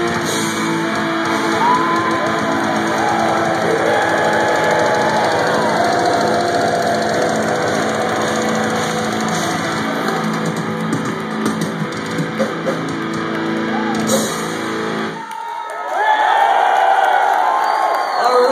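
Death metal band playing live with distorted electric guitars and drums through a loud PA. The song stops suddenly about fifteen seconds in, and the crowd cheers and whoops.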